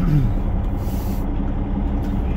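Peterbilt 389 semi truck's diesel engine running steadily at low speed as the truck creeps forward, heard from inside the cab.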